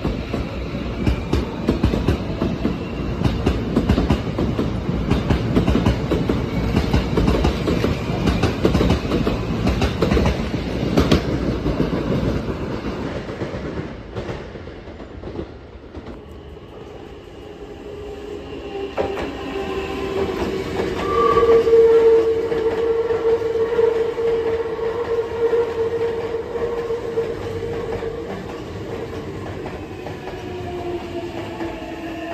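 Maroon electric commuter train running along a station platform, its wheels clattering over the rail joints. After a break, a second train approaches and passes with a steady held tone for several seconds over its running noise.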